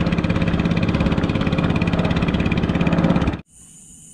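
Small boat engine running steadily with a rapid, even beat. It cuts off suddenly near the end.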